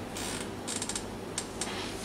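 A few short creaks and rustles over a steady low electrical hum.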